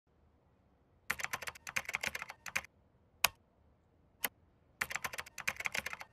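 Typing on a computer keyboard: a quick run of keystrokes about a second in, two single keystrokes a second apart, then another quick run near the end, as text is typed out.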